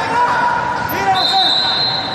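Spectators' voices and chatter echoing in a large sports hall, with a thin, steady high-pitched tone starting about halfway through.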